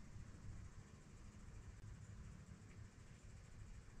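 Near silence: faint low room hum in a small shop.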